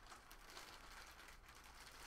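Near silence with faint handling noises: light clicks and rustles of packaging being handled, over a low steady hum.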